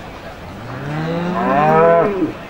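A Limousin cattle beast mooing once: one long call that starts about half a second in, rising in pitch and getting louder toward the end.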